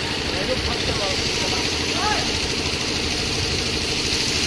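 Engine-driven water pump running steadily, feeding a hose whose jet is washing flood silt off the ghat steps, with the hiss of the water jet over the engine's drone.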